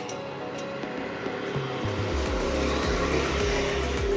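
A motor vehicle's engine rumbles in about a second and a half in and grows louder, a low, steady drone.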